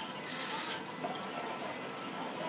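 Hookah water bubbling steadily through a long draw on the hose, over quiet background music with a light beat.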